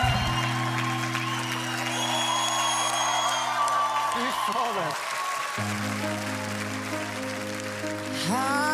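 Studio audience applauding and cheering over band music. About five and a half seconds in, the sound cuts to the quiet instrumental intro of a new song.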